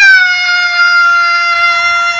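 A woman's voice holding one loud, high sung note at a steady pitch.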